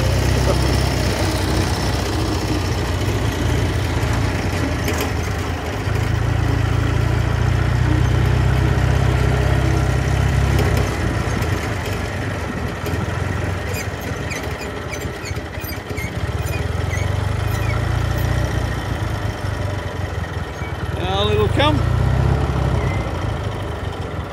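Engine of a small open vehicle running as it drives slowly across a grass showground. Its low drone swells louder twice, about six seconds in and again near the end, with a few light clicks and rattles in between.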